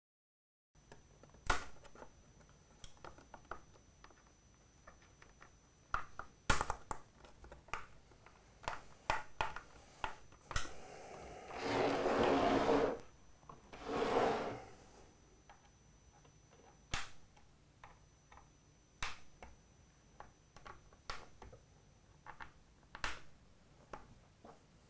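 Scattered clicks and knocks of a small driver working the screws of a clear acrylic 3D printer frame, with two longer, louder scrapes a little past the middle as the frame is handled and turned on the wooden bench.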